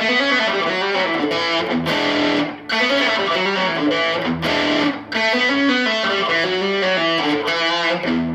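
Distorted electric guitar playing a fast lead phrase of quick single notes, broken twice by brief stops. It is the run that closes a hard rock boogie riff.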